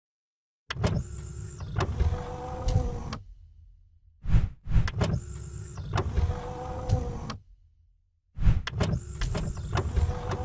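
Mechanical whirring sound effect for an intro animation, played three times. Each pass lasts about three seconds, opens with a knock and has clicks along the way.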